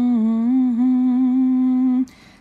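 A voice humming one long held note, dipping slightly in pitch twice early on, then cutting off.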